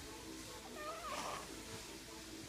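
Baby making a short, wavering coo about a second in.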